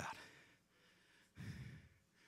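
A man drawing a short breath into a handheld microphone about a second and a half in, between spoken phrases; otherwise near silence.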